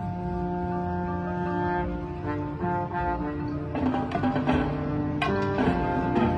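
Marching band and front ensemble playing slow, sustained low chords that shift every second or two, with struck accents coming in about four seconds in and again just after five.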